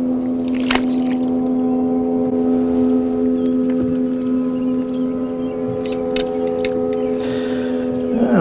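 A loud, steady droning hum at one constant pitch, with a few brief clicks over it.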